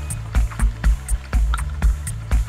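Minimal techno from a DJ set: a steady four-on-the-floor kick drum about two beats a second, with bass notes and crisp hi-hat ticks between the beats.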